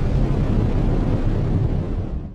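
Deep, steady rumble of a bomb blast from an airstrike, heaviest in the bass and without a sharp crack, easing off near the end.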